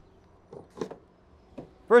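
A few light knocks and clicks of a Tesla Supercharger charging handle being lifted out of its holster on the charging post, about half a second to one second in.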